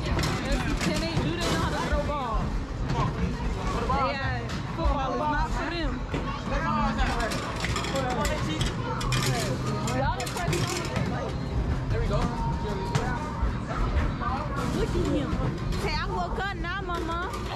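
Busy arcade din: a babble of voices and children's shouts over arcade-game music, with frequent short knocks and clatters.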